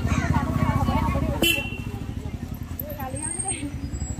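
Indistinct voices calling out over a steady low rumble, with one sharp click about a second and a half in.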